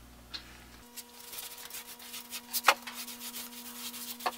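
Paint stirred in a metal paint can with a stick: irregular scraping against the can, with a sharp knock about two-thirds of the way through. A faint steady hum sits underneath from about a second in.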